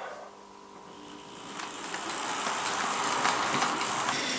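TT-scale model train running along the layout's track, its rolling and motor noise growing steadily louder as it approaches, over a faint steady hum.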